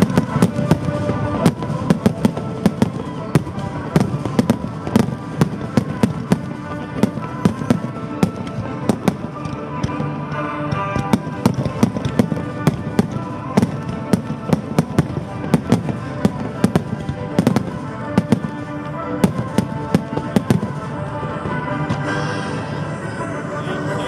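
Firework shells and low-fired effects bursting in a rapid, irregular run of dozens of sharp bangs, with music playing underneath.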